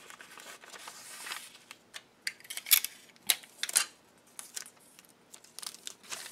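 Brown paper bag pieces rustling and crinkling under the hands, then several short, sharp crackles of clear tape being torn and pressed along the seam between them.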